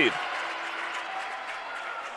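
Applause from the gym crowd and bench after a made three-pointer, a steady clatter that slowly dies away.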